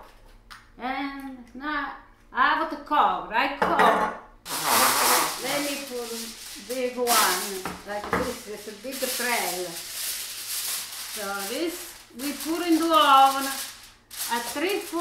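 Sheet of aluminium foil rustling and crinkling as it is handled and spread over a metal baking pan, starting suddenly about four and a half seconds in and running loudly until near the end, under a woman's talking.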